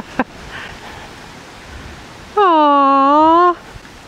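A woman's voice holding one long 'aww'-like note for about a second, a little past the middle, its pitch dipping slightly and coming back up.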